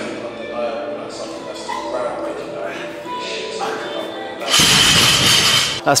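Loaded barbell dropped from overhead onto the lifting platform: a sudden loud crash of the weight plates about four and a half seconds in, lasting over a second, over gym background music.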